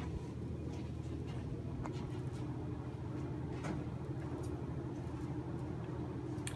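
Elevator doors sliding closed: a low steady hum with a few faint clicks as the door panels travel.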